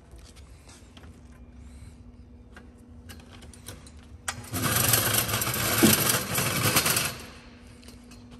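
Scattered light clicks and knocks, then about four seconds in a loud, rattling power-tool noise that runs for about three seconds and stops. A faint steady hum lies under it all.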